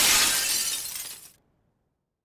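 Glass-shattering sound effect: a crash of breaking glass that fades, then cuts off suddenly about a second and a half in.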